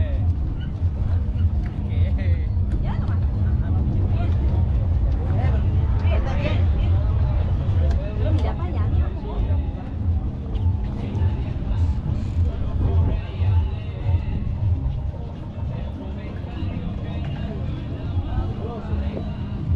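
People talking in the background over a steady low hum and rumble.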